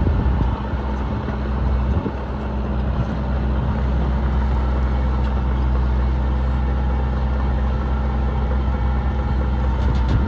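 Tracked brush-cutting machine running steadily as it cuts bracken on a steep slope: a deep engine note with the rough hiss of the cutting head over it. The sound dips about half a second in and builds back up by about three seconds.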